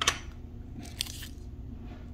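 Two short crinkles about a second apart as a small plastic blister pack and a paper pod wrapper are handled.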